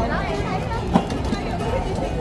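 Voices of people talking around a busy street-food stall, with one sharp knock about halfway through.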